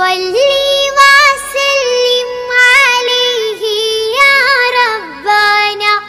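A high-pitched solo voice singing a devotional nasheed in praise of the Prophet, holding long notes with wavering, ornamented turns.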